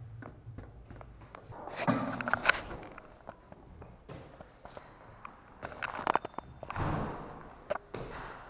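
Handling noise from a handheld camera being carried while walking: scattered clicks and rustles with footsteps, and two louder rustling bursts about two seconds in and near seven seconds.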